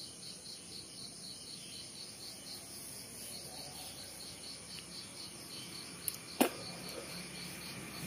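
Faint insect chirping in an even, fast pulse, cricket-like, with a single sharp click about six and a half seconds in.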